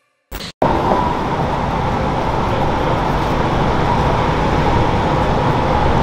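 Steady street background noise, a constant traffic rumble and hiss, rising in abruptly just after a brief burst near the start.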